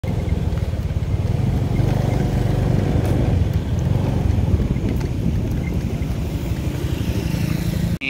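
Steady low rumble of road traffic and vehicle engines.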